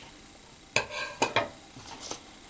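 A few short clicks and rustles, most of them close together in the middle, as a strip of foamiran craft foam is handled.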